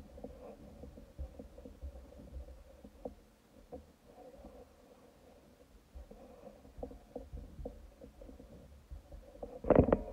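Dry-erase marker writing on a whiteboard in short strokes, over a low rumbling of bumps against the surface. Just before the end, a loud thump as the camera is knocked.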